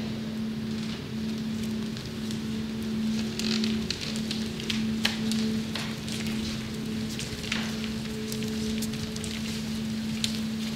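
A steady low hum runs throughout, with faint scattered clicks and shuffles of actors' feet and robes as the chorus moves across the stage.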